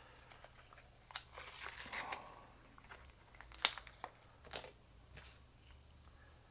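Packaging crinkling and tearing as a pair of tweezers is unpacked, for about a second, followed by one loud sharp click near the middle and a few fainter clicks shortly after.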